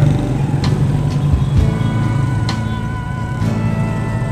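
Motorcycle engine idling in stop-and-go traffic, a steady low rumble, with music playing over it.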